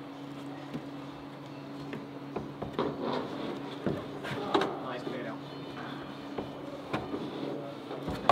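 Climber moving on an indoor bouldering wall: scattered short knocks and taps of hands and climbing shoes on the holds, over a steady low hum.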